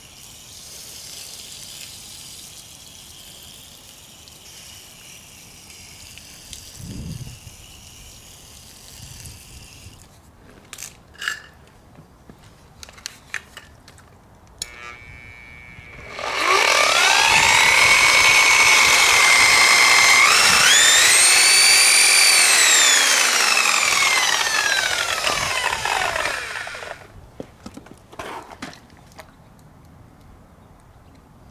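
Electric rotary polisher switched on and spinning its foam pad freely for about ten seconds, its motor pitch stepping up and climbing, then falling as it winds down after release.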